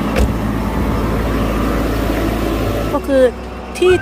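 Steady low rumble of a diesel engine running, likely the JCB 3CX backhoe loader idling. A voice starts about three seconds in.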